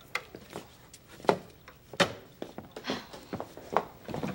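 Knocks and bumps of a wooden bread box cabinet and its small door as a doll is shoved inside: a string of sharp wooden taps with three louder knocks.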